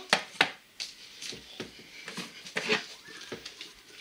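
Irregular soft clicks, knocks and rubbing, like handling noise, scattered through a quiet room.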